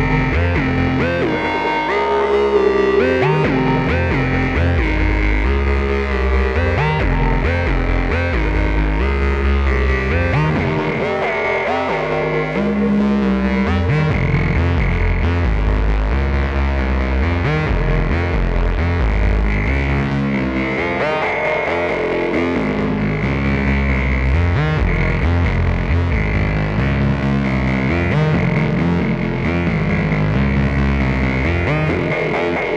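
Behringer K2 analog monosynth played through a Strymon Volante echo pedal: a continuous pitched synth line with heavy bass, its pitch and tone sweeping as the synth's knobs are turned.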